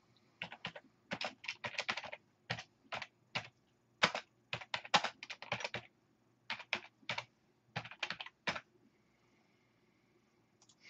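Computer keyboard being typed on: irregular runs of quick key clicks that stop about a second and a half before the end.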